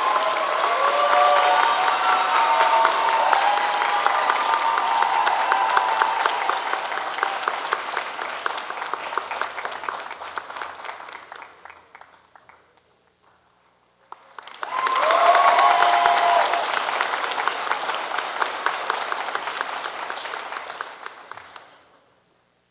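Audience applause with cheering voices. It dies away about twelve seconds in, then after a brief hush a second round of applause and cheers starts and fades out near the end.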